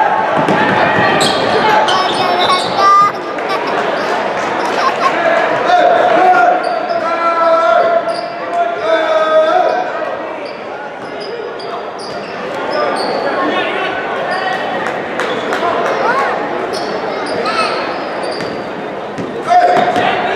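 Basketball game on a hardwood gym floor: the ball bouncing, with many short high sneaker squeaks and players and spectators calling out, all echoing in a large gym.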